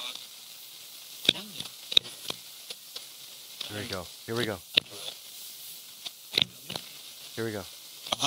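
Paranormal Systems MiniBox Plus AM ghost box sweeping the AM band: a steady hiss broken by rapid clicks as it jumps between stations, with brief choppy snatches of radio voices, strongest about halfway through and again near the end.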